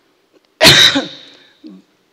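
A person coughs once, sharply and loudly, close into a handheld microphone about half a second in, followed by a brief soft throat sound.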